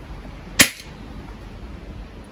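A single shot from a Milbro S3 .177 break-barrel spring-piston air pistol firing a dart: one sharp crack about half a second in. It is a weak shot, measured at only about 0.2 foot-pounds with the heavy dart.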